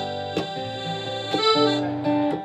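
An acoustic band plays an instrumental passage without singing. A wind instrument holds long notes over acoustic guitar and upright bass, with guitar strums about half a second and about 1.4 seconds in.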